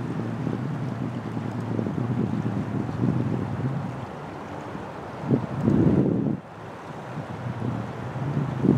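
Wind buffeting the microphone in uneven gusts, strongest about five to six seconds in, over a faint steady low hum.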